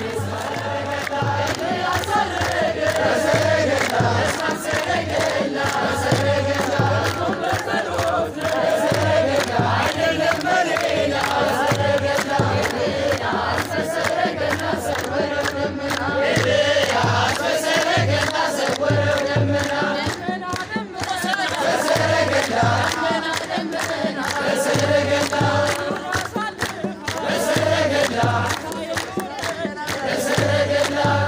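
A crowd of men and women singing an Ethiopian Orthodox mezmur together, clapping their hands in time, with a steady low beat under the singing.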